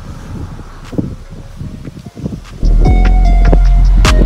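Wind buffeting the microphone, then background music cuts in abruptly about two and a half seconds in, loud, with a heavy bass and held notes.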